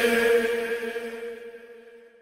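The closing sustained note of an a cappella noha: a steady vocal drone held on one pitch, fading away over about two seconds.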